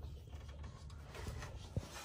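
Quiet background with a faint low hum and soft rubbing noises, with one light click just before the end.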